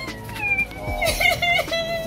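A high voice in drawn-out, held notes, stepping between a few pitches.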